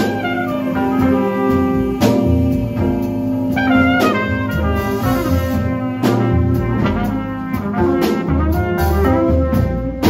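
Live jazz ensemble playing a ballad: trumpet carrying the melody over archtop electric guitar, double bass and a drum kit with regular cymbal and drum strokes.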